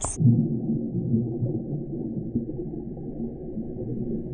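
Muffled underwater sound from a camera submerged in a swimming pool: a steady low rumble of moving water, with no high sounds at all. The sound turns dull abruptly as the camera goes under, right at the start.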